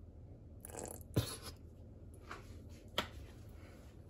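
Squeeze bottle of tomato sauce being handled: a short sputter of sauce and air, with a sharp click about a second in and another near three seconds.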